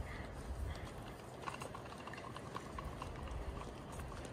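Faint footsteps tapping on a glass-panelled pedestrian bridge deck, a run of light hard taps over a low steady rumble.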